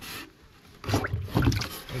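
Hands splashing and sloshing in a shallow tank of water while grabbing a small dwarf snakehead (Channa limbata). There is a brief splash at the start, then a lull, and then a loud run of irregular splashes from about a second in.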